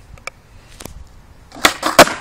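Skateboard deck knocking against concrete: two sharp clacks about a third of a second apart near the end, with a brief scraping between them, as the board is tipped and its tail set down. A couple of faint clicks come before.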